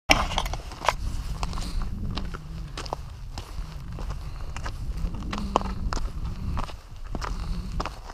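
Footsteps crunching on a loose rock and gravel trail: quick, irregular crunches over a steady low rumble.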